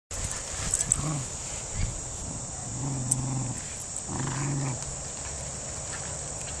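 Beagles growling in play while chewing and tugging a deflated plastic beach ball. There are three low growls, about a second in, around three seconds and just past four seconds, with a few sharp clicks of plastic and teeth.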